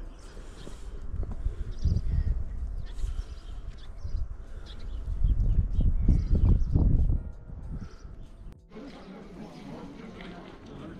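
Gusts of wind buffeting the camera microphone as a low rumble, in two surges with the second the loudest, mixed with crunching footsteps on snow. The sound drops away suddenly near the end.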